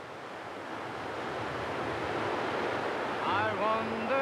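A steady rushing outdoor ambience that slowly grows louder. About three seconds in, music comes in with a gliding, wavering melody.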